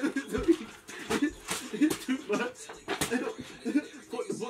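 People chuckling and talking, with a few short sharp slaps or knocks among the laughter.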